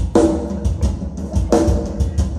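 Live metal drum kit playing a fast kick-drum pattern under cymbals. Two heavy accented hits land near the start and about a second and a half later.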